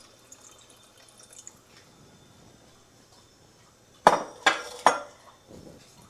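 Vegetable stock being poured faintly into a cast-iron soup pot. About four seconds in come three sharp clinks of kitchenware being knocked or set down, in quick succession.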